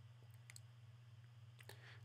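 Near silence over a steady low hum, with a few faint computer keyboard keystrokes, one about half a second in and a couple near the end.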